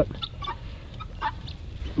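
Chickens clucking: a handful of short, faint clucks scattered through the couple of seconds.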